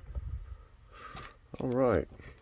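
About a second and a half of quiet with faint rustling from foil trading-card packs being handled, then a man's voice starts near the end.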